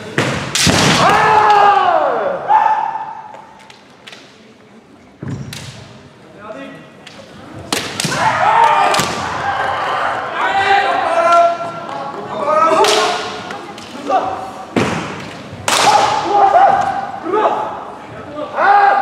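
Kendo fencers' bamboo shinai striking armour and each other in sharp cracks, each strike met with loud kiai shouts. There is a crack with a long falling shout just after the start, and more cracks and shouts about five, eight, fifteen and sixteen seconds in.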